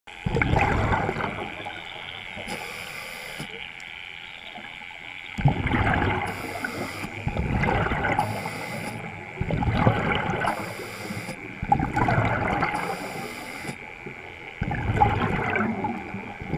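Scuba regulator breathing heard underwater: six rumbling bursts of exhaled bubbles, with short high-pitched hissing inhalations between them. A faint steady high whine runs underneath.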